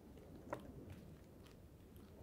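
Near silence with quiet handling of a paperback book's pages: one short sharp click about half a second in, then a few faint ticks.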